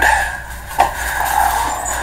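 A single short knock a little under a second in, over steady room noise with a faint constant hum.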